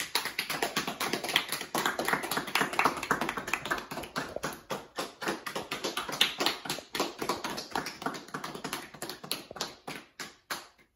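A small group of people clapping steadily after a speech.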